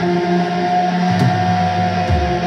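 Live rock band holding a sustained, droning chord, with the drums and bass briefly dropping out under the held tones.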